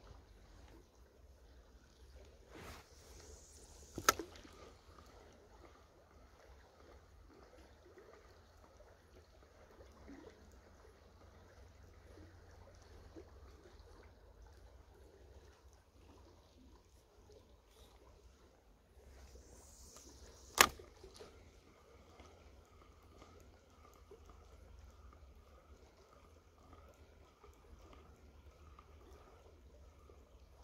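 Two casts with a spinning rod: each a short swish of rod and line ending in a sharp click as the reel's bail arm snaps shut, about four and twenty seconds in. After each, the spinning reel whirs faintly as the lure is retrieved, over the quiet steady run of the river.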